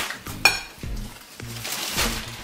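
Plates and cutlery clinking at a meal table, with one sharp clink about half a second in, over quiet background music.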